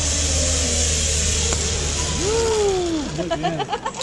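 Zip line trolley pulleys rolling along the steel cable with a steady whir and wind rush. About two seconds in, a person's voice gives one long call that falls in pitch.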